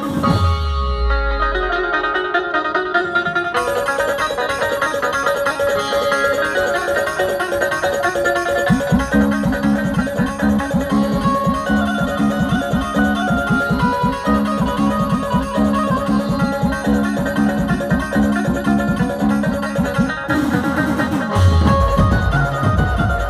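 Dhumal band instrumental of a Chhattisgarhi song: an electric Indian banjo, its keys pressed while the strings are strummed rapidly, carries the melody over drum accompaniment. A steady low rhythm joins about nine seconds in, breaks off briefly near the end, and a heavy bass beat comes back.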